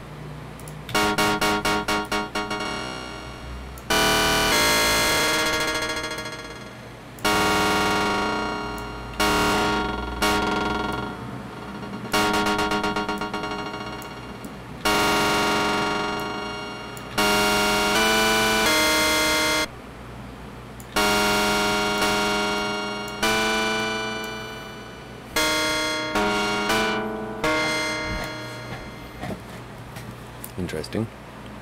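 A sampled sound played as pitched notes from Ableton's Simpler sampler through the Overdrive distortion effect. A quick stuttering run of repeated hits about a second in gives way to a string of held notes at changing pitches, each starting sharply and fading.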